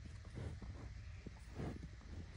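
Two short, faint snuffling breaths at close range, about half a second in and again near the end, as a dog and a bison sniff noses through a fence, over a low steady rumble of wind.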